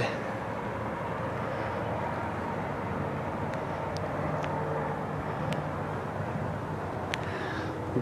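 Steady outdoor background hum of vehicle noise, with a low drone and a few faint ticks.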